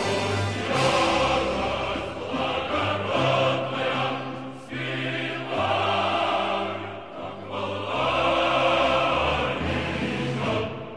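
Background music: a choir singing in sustained phrases a couple of seconds long.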